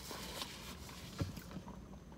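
Quiet eating sounds: a bite and faint chewing, with a couple of soft mouth clicks, over a low steady hum inside a parked car.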